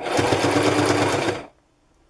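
Domestic electric sewing machine stitching through fabric in one short run of about a second and a half, then stopping.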